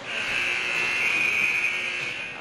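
Ice rink's end-of-period buzzer sounding one long steady tone, marking the end of the first period.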